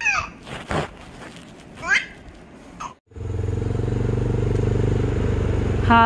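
A baby squealing twice, then, after a sudden cut about three seconds in, the steady low running of a motorbike engine heard from the moving bike, with wind noise on the microphone.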